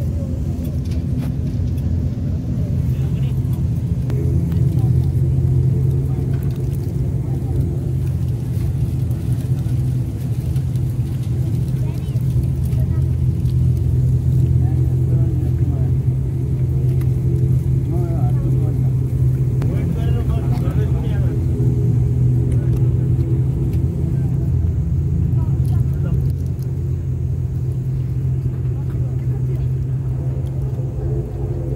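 ATR twin-turboprop airliner's engines and propellers running steadily while taxiing, heard inside the cabin as a constant low drone with a few even overtones above it.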